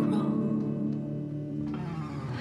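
Two hollow-body guitars playing a quiet instrumental passage between sung lines: held chords ringing and slowly fading.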